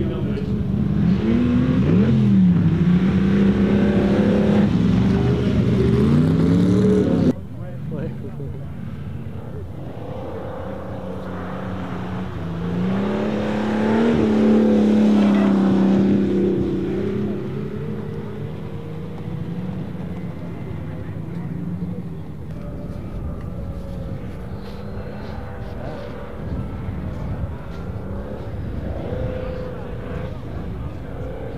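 Ferrari 250 Testa Rossa's V12 engine revving up and down as the car powerslides on ice. The sound cuts off suddenly about seven seconds in, then comes back with a second climb and peak of revs around the middle, and settles into lower, steadier running for the rest.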